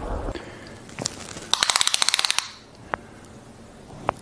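A rapid run of sharp clicks, about eighteen a second, lasting just under a second, followed about half a second later by a single click.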